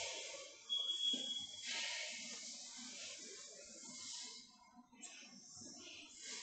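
Faint room noise and hiss, with a short, steady high tone lasting about a second, beginning about a second in.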